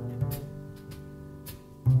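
Jazz piano trio recording: a piano chord rings and fades over walking plucked double bass and light cymbal strokes. A loud new piano and bass attack comes just before the end.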